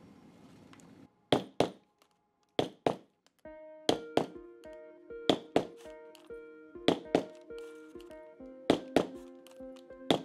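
A steel setting tool struck with a mallet to set brass domed studs into a leather cuff strap: sharp thunks in quick pairs, one pair every second and a half or so. Background music with held notes comes in about three and a half seconds in.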